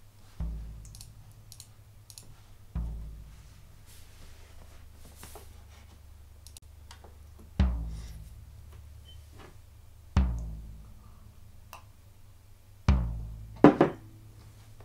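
Recorded floor tom hits played back one at a time, each a single strike with a low boom that rings out and dies away over a second or two. The two early hits are light, the later ones louder, and two sharp strikes come close together just before the end.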